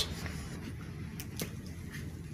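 Quiet room tone with a low steady hum and two faint clicks a little over a second in.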